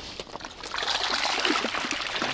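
Water splashing and trickling off a fishing keepnet as it is pulled up out of the water by its rope, growing louder about two-thirds of a second in.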